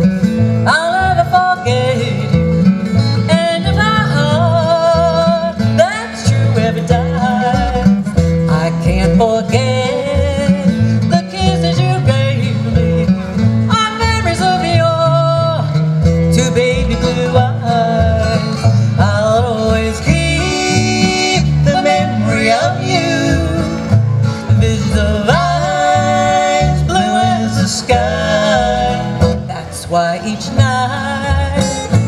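Acoustic bluegrass band playing: a strummed and picked acoustic guitar and a plucked upright bass keep the rhythm under a sliding, wavering lead melody.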